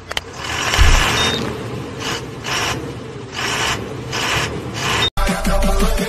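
Logo-intro sound effects: a mouse click, a whooshing swell with a low boom about a second in, then several more whooshes. About five seconds in it cuts abruptly to electronic hip-hop music with a steady beat.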